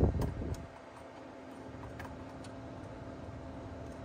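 A BIOS chip being pressed by hand into its socket on a slot machine's CPU board: low handling thumps in the first half-second, then a few faint clicks over a steady low hum.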